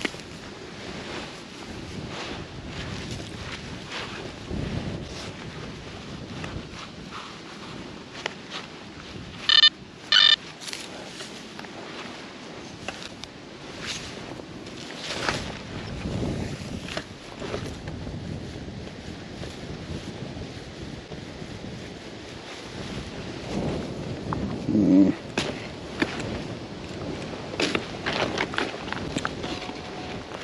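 Gloved hands working soil and turf out of a small dug hole in grass, making crumbling and rustling sounds, with light wind on the microphone. About ten seconds in come two short, loud electronic beeps from metal-detecting equipment.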